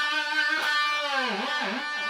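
Electric guitar (EVH Wolfgang) through an EVH amp, playing a fretted D at the seventh fret of the G string. The note is held, picked again about half a second in, then bent down with the tremolo bar and let back up twice in a shallow wobbling dive.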